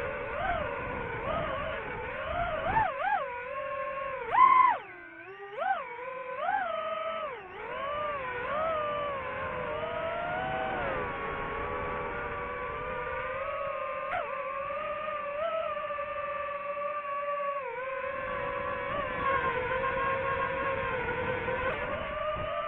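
DJI FPV drone's motors and propellers whining, the pitch swooping up and down as the throttle changes, with a sharp burst of throttle about four and a half seconds in. It then settles into a steadier whine.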